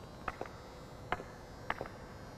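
Hockey stick blade tapping a puck on ice during stickhandling, the puck cupped back and forth between the front and back of the blade. About four light clicks at uneven spacing: one early, one near the middle, and two close together near the end.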